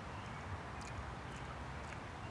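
Quiet outdoor background: a steady faint hiss with a few faint, short ticks.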